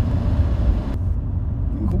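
Steady low rumble of a car's engine and tyres on the road, heard from inside the cabin while driving; a voice starts right at the end.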